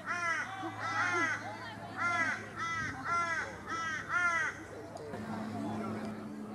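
A crow cawing about six times in quick succession, each caw short and much alike, stopping after about four and a half seconds.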